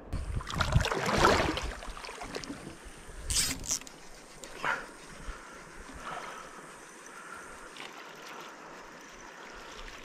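Wind and handling noise on the microphone over gentle river water, with a loud rush of noise in the first two seconds and shorter bursts a few seconds in.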